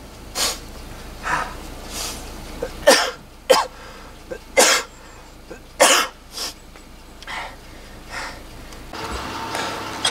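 A man coughing repeatedly in short, hard bursts, about a dozen over ten seconds, some in quick pairs: a rider's cough straight after an all-out hill-climb effort.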